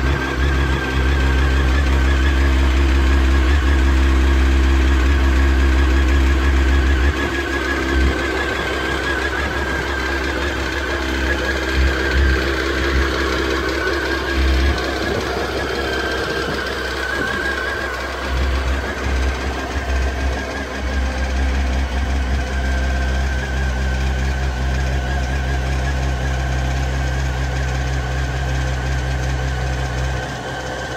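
Honda CBR954RR's inline-four engine idling steadily while warming up after its first start of the year. The low rumble is heavier for the first seven seconds or so, then settles.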